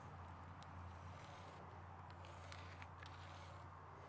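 Faint scratching of a pencil drawn along a steel rule on an oak post, in two short strokes, the second a little longer, over a low steady hum.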